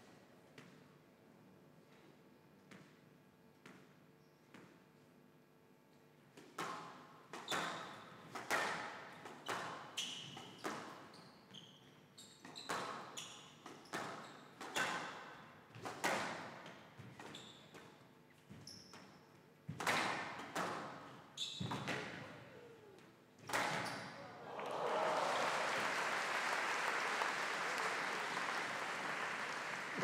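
A squash rally in a large hall: the ball cracks off rackets and the court walls roughly once a second, each hit ringing briefly. After a few quiet seconds the hits start, and they stop about six seconds before the end, when a crowd breaks into applause as the point ends.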